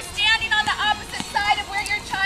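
Children's high-pitched voices calling out and chattering in short, rising and falling bursts, with no clear words.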